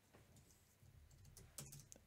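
Faint computer keyboard keystrokes as code text is deleted: a few soft key clicks, the clearest near the end.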